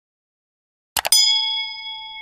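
Silence for about a second, then a mouse click followed at once by a single bell ding that keeps ringing: the click-and-bell sound effect of an animated YouTube subscribe button.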